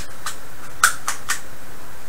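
A steady hiss, with a few short, soft clicks, the clearest a little under a second in.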